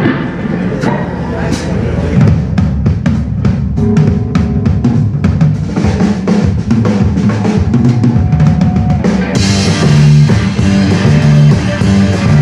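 Live rock band playing: a drum kit's steady beat with electric guitars and bass, the sound getting louder and fuller, with more cymbal, about nine seconds in.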